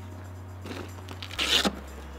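The fabric travel cover of a roof-rack awning being pulled open, with a short, weak ripping sound and then a louder, longer one near the end. A steady low music bed plays underneath.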